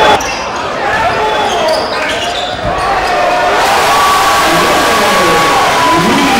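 Live sound of a basketball game in a gym: a basketball bouncing on the hardwood court under a hubbub of crowd and player voices echoing in the hall.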